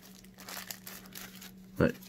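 Faint crinkling and rustling of plastic packaging being handled, with a few light clicks, over a steady low hum.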